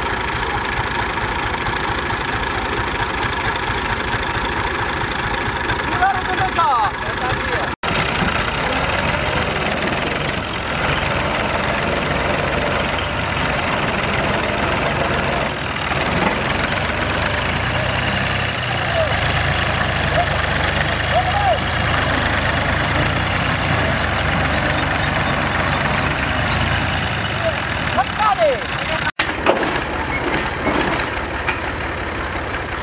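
Farm tractor diesel engines running steadily under load while a Universal 530 tractor is worked free of deep mud, with a heavier, deeper rumble about halfway through.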